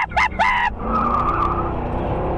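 Car tyres squealing for about a second as a vehicle is whipped around hard, over a low engine rumble. A few quick bursts of laughter come just before the squeal.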